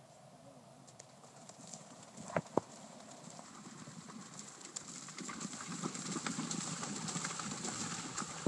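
Horse's hoofbeats at a canter on turf, growing louder as it comes closer, with two sharp knocks about two and a half seconds in. Toward the end the hoofbeats mix with splashing as the horse goes through shallow water.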